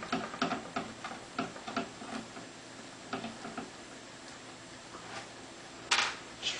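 A hexagon screwdriver undoing small screws in a CD player's chassis: a run of light, irregular ticks, a few a second, that thin out after about four seconds.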